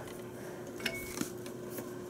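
A few faint, light metallic clicks and clinks from a hand handling the metal faceplate of a vintage Otis elevator floor indicator, over a faint steady hum.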